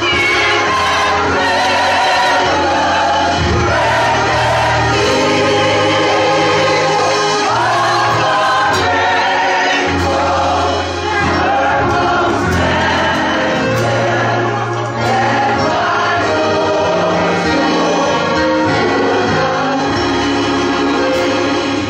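Gospel choir singing in full voice over instrumental accompaniment, with held low bass notes that change every second or two.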